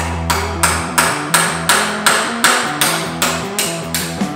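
Rapid, evenly spaced metal-on-metal hammer strikes, about three a second, over background rock music.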